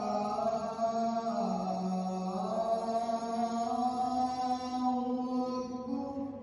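A single voice doing Islamic chanting in long held notes that glide slowly up and down in pitch. It begins suddenly at the start.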